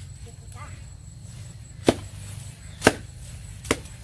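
Three sharp chops of a long-bladed knife cutting weeds and brush along a wire fence, about a second apart, the middle one loudest.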